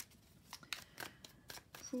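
A tarot deck being handled: a few faint, scattered clicks and snaps of cards.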